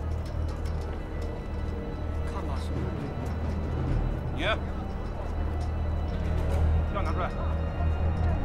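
Low, steady background music under the scene, with a few brief voices calling faintly in the background, one in the middle and one near the end.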